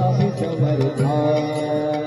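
A man sings a devotional bhajan into a microphone over a PA, holding one long, steady note through the second half. Behind him runs a percussion accompaniment with a regular low beat.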